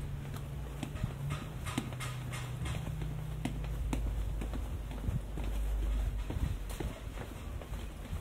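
Footsteps going down stone stairs: crisp, evenly paced steps at about two to three a second.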